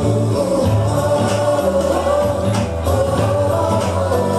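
Hindi children's song playing, with a group of voices singing over a bass line and light percussion.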